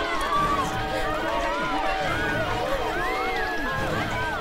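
A crowd of many voices talking and calling out over one another, with no single voice standing out.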